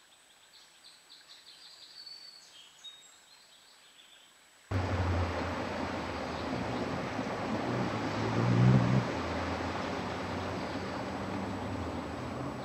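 Faint bird chirps, then about five seconds in a sudden switch to a loud, steady outdoor background hiss picked up by a webcam microphone, with a low hum under it. The hum swells briefly around nine seconds in, as a female Allen's hummingbird's wings hum while she flies in to settle on her nest.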